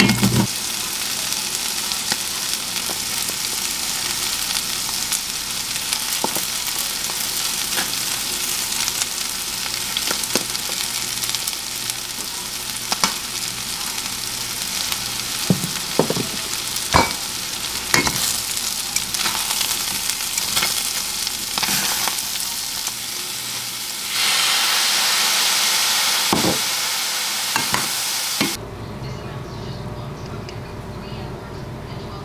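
Chicken strips, onions and bell peppers sizzling in a stainless steel skillet, stirred with metal tongs that clack against the pan several times. The sizzling grows louder about 24 seconds in, then cuts off suddenly near the end.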